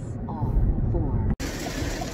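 Low rumble of a car heard from inside the cabin, which cuts off abruptly a little over halfway through. It gives way to a steady hiss of heavy rain on the car.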